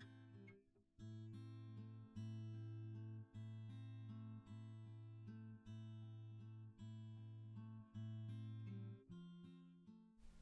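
Quiet background music on acoustic guitar, with a slow, even pulse of notes about once a second.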